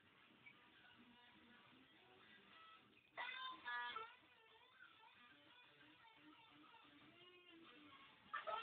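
Electric guitar played softly: quiet single notes with string bends, and a louder flurry of struck chords and notes about three seconds in.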